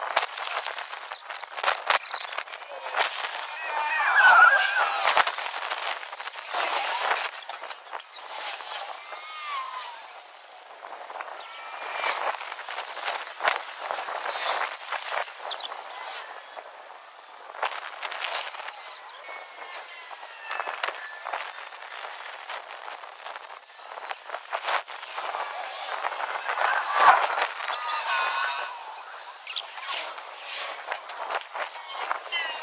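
Footsteps of people walking on a concrete footpath, irregular and close, with outdoor noise and a few short sliding calls or squeals, the clearest about four seconds in and again near the end.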